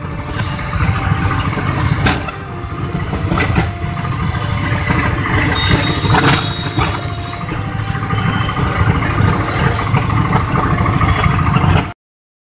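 Riding in an open-sided rickshaw through street traffic: a steady low vehicle and road rumble, with a few short knocks and rattles.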